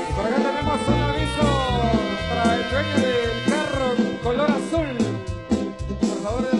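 Live tropical dance music from a marimba orquesta: a steady pulsing bass beat under a lead melody with sliding, bending notes.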